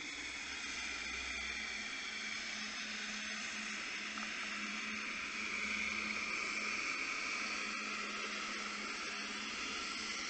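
Steady underwater hiss heard through a submerged camera in its housing as it drifts over the bottom with the rig, with a faint steady hum underneath.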